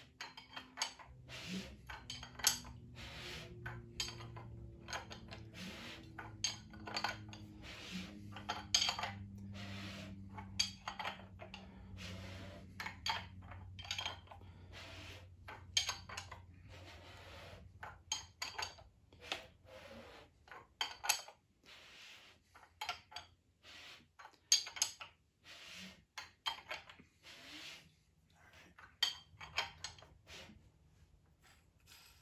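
Ford 427 FE V8 being turned over by hand on an engine stand: irregular metallic clicks and clinks from the tools and valvetrain as the valves open against clay strips on the pistons in a piston-to-valve clearance check. A low hum underneath fades out about halfway through.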